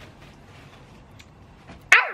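A woman's short, loud yelp near the end, starting high and falling in pitch, after a quiet stretch of faint room noise.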